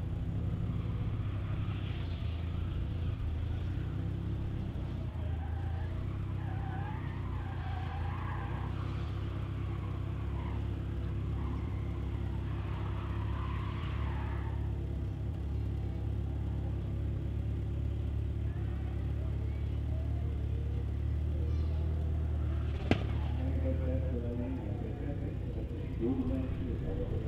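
Mitsubishi Galant VR-4's turbocharged 4G63 four-cylinder idling with a steady low rumble while staged at the line. Faint distant voices come and go in the first half, and a single sharp click sounds near the end.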